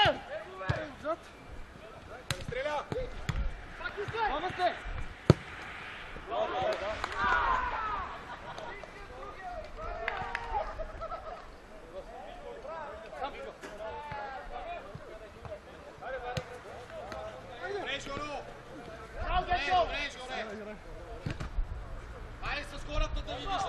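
Football being kicked during play on an artificial-turf pitch, with scattered distant shouts from players; one sharp, loud kick stands out about five seconds in.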